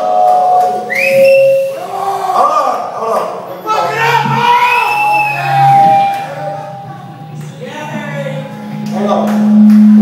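Live rock band playing on a small stage, with high sliding, wavering notes over the band and a held low note swelling near the end.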